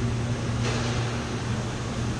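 Steady low machine hum with an even hiss, a background drone of electrical or ventilation equipment. There is a brief soft rustle about two-thirds of a second in.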